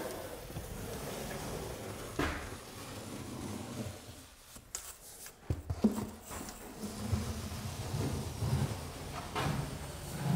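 A drywall compound tube's applicator head sliding along an inside wall-to-ceiling corner, scraping as it pushes joint compound into the corner, with a few short knocks partway through.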